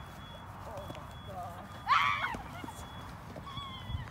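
A short, high-pitched cry that bends in pitch, about halfway through, over a steady low rumble of wind on the microphone.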